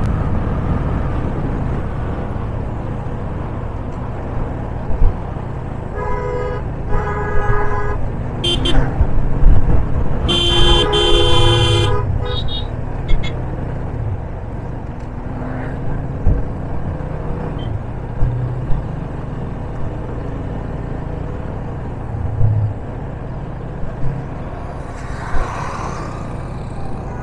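Yamaha FZ25 single-cylinder motorcycle running along a winding road with a steady rumble of engine and wind. A vehicle horn honks twice briefly about six seconds in, then a longer, louder honk sounds around ten to twelve seconds.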